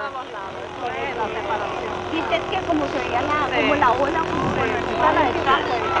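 Many people talking at once over a low, steady rumble with a constant hum.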